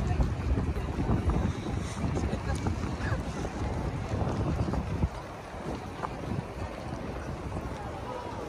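Wind buffeting the microphone of a walking camera, a heavy low rumble that eases about five seconds in, over the open-air hubbub of a busy pedestrian street.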